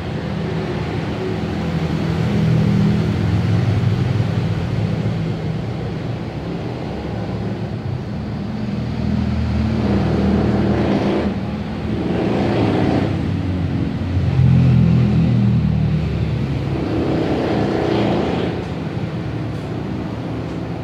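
Motor vehicle noise: a steady low rumble that swells and fades several times as vehicles go by.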